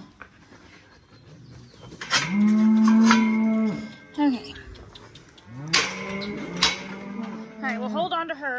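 A cow mooing twice, each a long low call lasting about two seconds, the first about two seconds in and the louder of the two. A few sharp clicks come during the calls.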